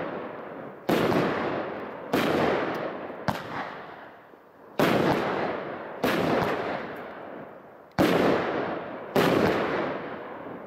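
A 12-shot consumer firework barrage cake firing about seven shots, roughly one a second, with a slightly longer pause past the middle. Each shot is a sharp bang that trails off over about a second.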